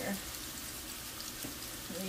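Seasoned ground-beef patties frying in oil in a skillet: a steady, even sizzle.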